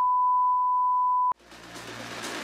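A steady, high test-tone beep of the kind that goes with TV colour bars, held for about a second and a half before cutting off suddenly. A soft hiss then rises.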